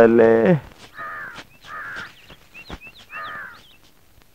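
A bird cawing three times, about a second apart, with small birds chirping high between the caws.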